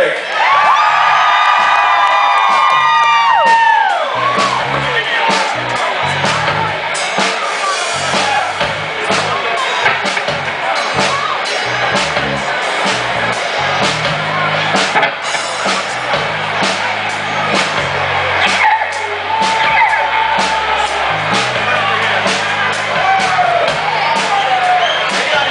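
Live rock band playing over the stage PA, with a crowd cheering and whooping. In the first few seconds a long held note slides down and stops, then a dense run of sharp hits continues under the cheering.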